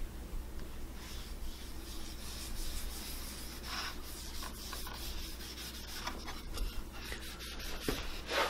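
Cloth rag rubbing butcher block oil into a sanded cedar board: faint, soft wiping strokes with a few light clicks.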